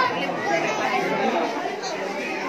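Chatter of several people talking over one another in an indoor hall.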